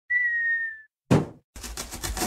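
Cartoon sound effects: a short whistle sliding slightly down in pitch, then a single thump, then a fast run of rasping strokes of a blade cutting through a cardboard box.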